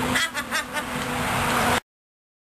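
A woman laughing hard, a shrill, breathy fit of laughter that cuts off suddenly near the end.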